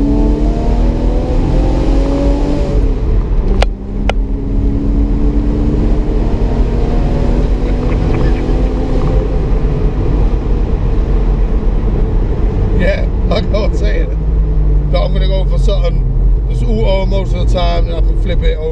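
Porsche 986 Boxster S flat-six, fitted with an induction kit and an aftermarket exhaust, revving up hard under acceleration. A short break with a couple of clicks about four seconds in marks a manual gear change, then it climbs through the revs again before settling. Heard from inside the open-top car, with wind rushing past.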